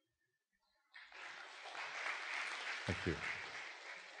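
Audience applauding, starting about a second in and carrying on steadily.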